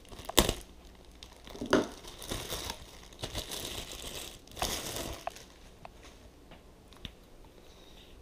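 Thin plastic bag crinkling and rustling in irregular bursts as a plastic extension pipe is pulled out of it, with a few sharp clicks. The rustling dies down over the last few seconds.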